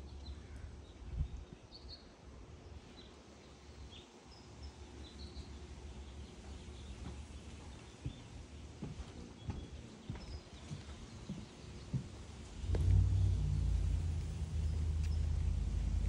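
Outdoor backyard ambience with a few faint, scattered bird chirps. Low wind rumble on the phone's microphone runs under it and gets much louder about thirteen seconds in.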